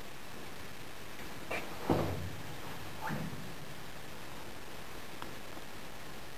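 Footsteps on a steel walkway: four dull thumps, the loudest about two seconds in, over a steady hiss.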